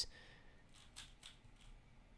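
Faint clicks of a plastic 3x3 speedcube's layers being turned by hand, a few quick turns about a second in.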